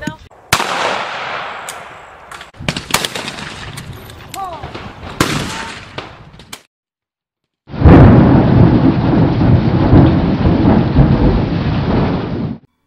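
Thunderstorm sound effect: several sharp cracks, each trailing off over a second or two, then after a brief silence a loud, steady rush of rain and thunder for about five seconds that cuts off suddenly.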